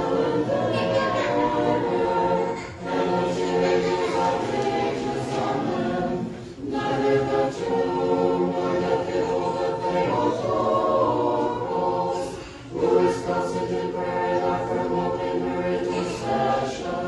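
Orthodox church choir singing liturgical chant a cappella, several voices together in phrases with brief pauses between them.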